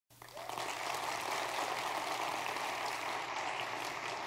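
Audience applause, a steady dense patter of many hands clapping that swells in during the first half second and holds level.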